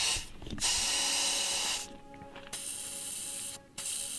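Air hissing out of a pickup truck's tire valve stem as the tire is let down to about 25 psi for off-road driving, in three spurts with short breaks between.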